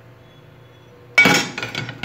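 A single sharp clink of kitchenware a little over a second in, ringing briefly as it fades, over a faint steady hum.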